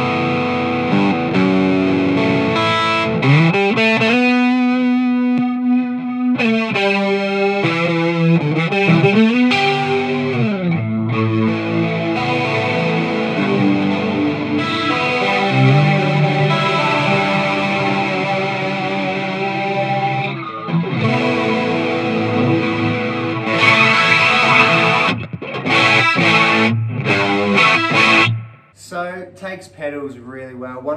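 Electric guitar played through the E-Wave (Pirana) DG50RH all-tube amp head's clean channel, driven by a Black Box Overdrive pedal. Overdriven single-note lines with string bends and held chords; the playing stops shortly before the end.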